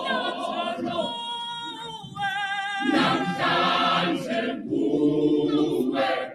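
A large choir singing a gospel song unaccompanied, in full harmony. The sound thins around two seconds in, with held wavering notes, and the full choir swells back in about three seconds in.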